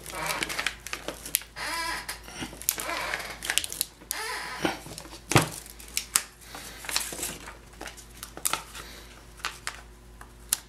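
Release paper crinkling and rustling as it is pressed over a flattened sheet of wax and peeled off, with scattered taps and one sharp knock about halfway through.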